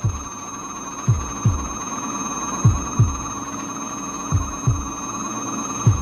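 Heartbeat sound effect: low double thumps, lub-dub, about every second and a half, over a steady electronic hum with thin high tones. There are three full beats, and a fourth starts near the end.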